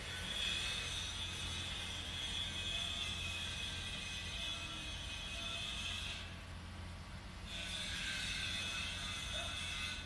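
A steady high-pitched whine of several close tones over a low hum, breaking off for about a second around six seconds in and then resuming.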